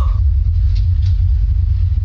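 Loud, deep, steady rumbling drone with no tune, an ominous low effect under a horror scene.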